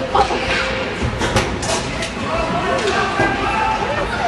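Ice hockey rink sound: spectators' voices in the background, with several sharp clacks of hockey sticks and puck, a couple just after the start and a cluster about a second in.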